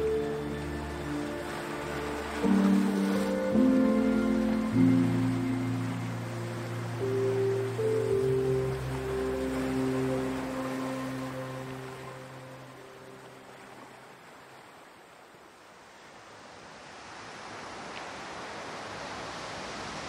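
Calm instrumental background music of slow, held notes that fades out about two-thirds of the way through, giving way to a steady rushing sound of surf that grows louder near the end.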